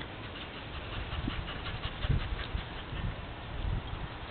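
Faint patter and rustle of a small dog's paws moving about on dry grass, with a few soft low thumps.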